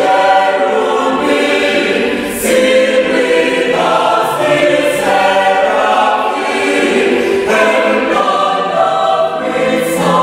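Church choir singing, several voices holding long notes together that change every second or two.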